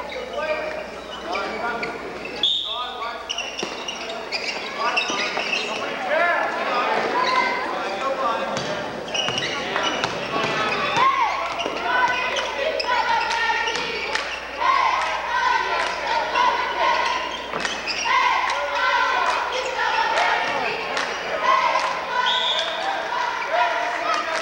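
A basketball bouncing on a hardwood gym floor during play, under the steady talk of spectators in the gymnasium.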